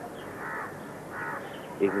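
A crow cawing twice, two short harsh calls less than a second apart.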